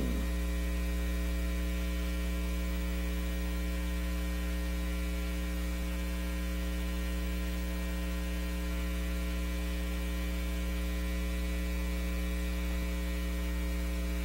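Steady electrical mains hum on the audio feed, a low buzz with a stack of evenly spaced overtones that does not change.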